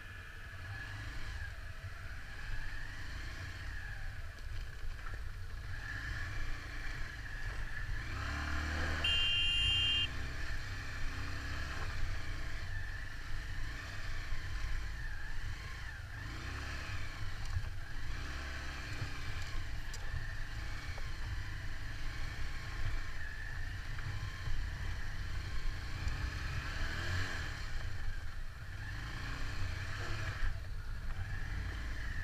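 Motorcycle running along at low speed: a steady low engine rumble mixed with wind on the microphone, with a brief high tone about nine seconds in.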